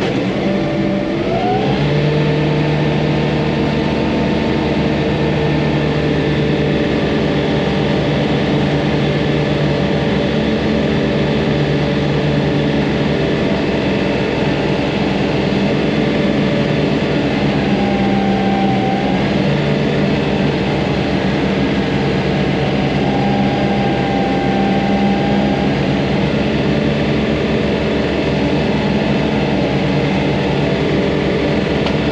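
John Deere 3046R compact tractor's three-cylinder diesel engine running under mowing load with its 72-inch deck cutting, heard from inside the cab. The engine rises in pitch about a second in, then runs steadily.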